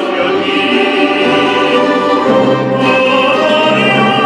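A male tenor singing a Neapolitan song in an operatic style, with long held notes, accompanied by a Russian folk-instrument orchestra of balalaikas and domras.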